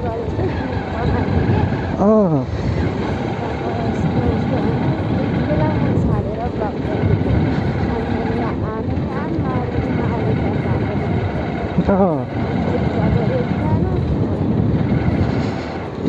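Motorcycle engine running while riding at low speed, with steady wind rumble on the microphone. A few short sounds rise and fall in pitch along the way.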